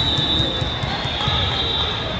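A ball thudding repeatedly on a hardwood gym floor amid the chatter of a crowd in a large hall, with a high steady tone held through most of it.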